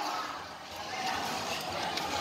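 Steady background murmur of a basketball crowd, much quieter than the commentary on either side, with no single sound standing out.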